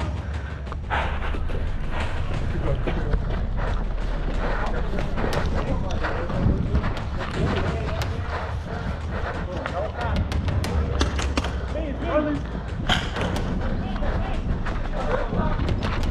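Paintball markers firing sporadic shots, with players shouting in the distance and handling noise close to the microphone.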